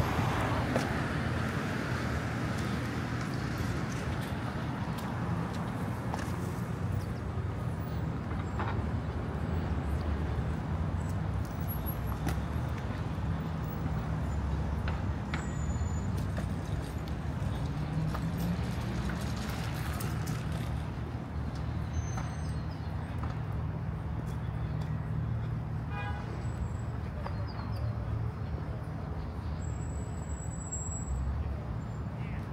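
Street traffic: a steady rumble of car engines and tyres on the road, with one vehicle rising in pitch as it speeds up a little past the middle.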